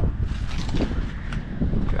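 Wind rumbling on the microphone, with a few faint light clicks.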